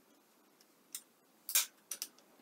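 A ball screw assembly being handled and set down on an aluminium plate, making small metal clicks and taps. There is a light click about a second in, a louder, slightly longer scraping tap past halfway, and another click near the end.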